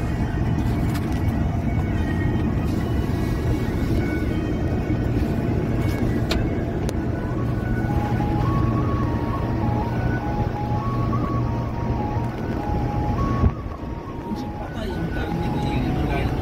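Steady low rumble of a moving road vehicle heard from inside, with music playing over it. The melody stands out more from about halfway through. A single sharp knock comes near the end, followed by a brief drop in the rumble.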